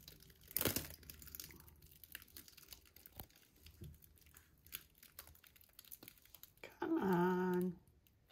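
Plastic drop sheeting crinkling and crackling faintly as a gloved hand shifts the canvas on it. Near the end comes a short, steady hummed "mmm" from a person.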